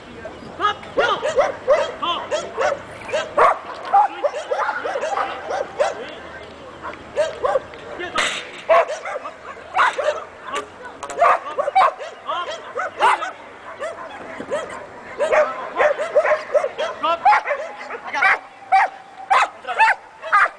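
Dog barking over and over in quick runs of short, high barks, with brief lulls between the runs.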